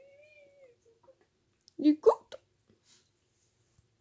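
A puppy vocalizing: a faint, thin whine that rises and falls over the first second, then a short, louder whining yelp that sweeps upward in pitch about two seconds in.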